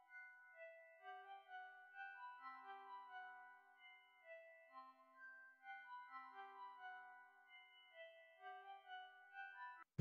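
Faint synth lead, Omnisphere's 'Distant Blipper Lead 1' preset, playing a slow ambient melody of short, high, blip-like notes pitched two octaves above the main melody. A few longer, lower notes sit beneath it, and the playback cuts off just before the end.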